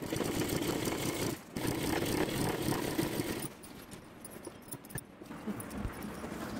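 Domestic sewing machine stitching a lace border onto fabric, running in two spells with a brief stop between. It goes quiet for the last couple of seconds, leaving only a few small clicks.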